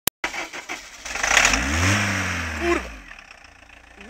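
Worn 1.6 engine of an old Volkswagen T3 van revved once, rising and falling back to a rough idle. The owner says one cylinder has no compression, and it is pouring out thick smoke.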